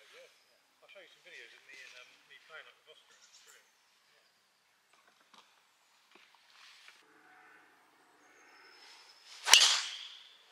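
Golf driver swung at a teed ball: a swish builds for about a second and a half, then a single sharp crack of the clubhead striking the ball near the end.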